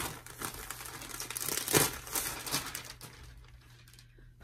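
Packaging crinkling and rustling as a bundle of clothes is unwrapped and an item is pulled out. It is loudest a little under two seconds in and quietens near the end.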